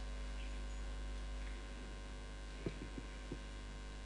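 Steady electrical mains hum from the sound system, with three or four soft knocks close together about two-thirds of the way in as a hand takes hold of the microphone.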